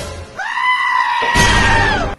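A short burst of noise, then a long high-pitched cry held at one pitch for about a second and a half, cutting off suddenly.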